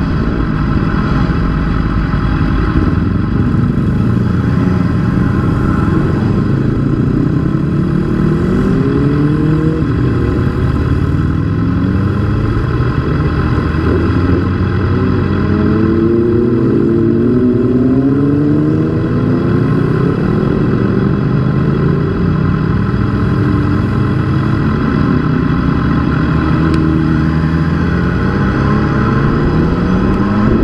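Motorcycle engine heard from on board the bike while riding, its pitch rising and falling again and again as the throttle opens and closes through the curves, with the sweeps most marked in the middle stretch.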